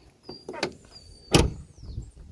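A car door shutting with a single solid thump about a second and a half in, among light footsteps.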